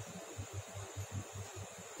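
Low electrical hum that pulses about five times a second, over a faint steady hiss.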